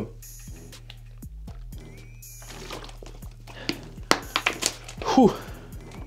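A man drinking from a plastic water bottle during a rest between dumbbell sets, with a few faint gulps and clicks over a steady low hum. Near the end he lets out a breathy 'ouh' that falls in pitch.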